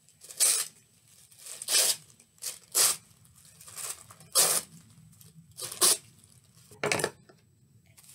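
White tissue paper being torn by hand into chunks and strips: a series of short rips about a second apart.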